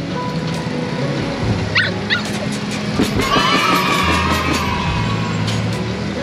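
A caged puppy yelps briefly about two seconds in, then gives one whine lasting about two seconds that falls slightly in pitch, over background music with a steady bass.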